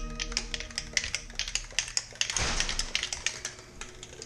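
Wood lathe starting up with a thin wand blank between centres, with a rapid, irregular clicking and rattling from the spinning work. There is a brief rush of noise about two and a half seconds in.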